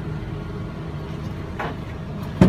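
Steady low hum of machinery with a faint steady tone, and one short knock about one and a half seconds in as the hinged cover of the LPKF Protomat S63 milling machine is closed.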